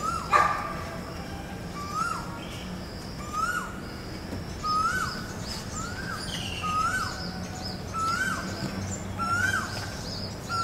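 A bird repeats the same short call, a note that slides upward and then drops, about once a second and a bit, nine or so times, while smaller birds chirp faintly higher up. About half a second in, a single sharp knock is the loudest sound.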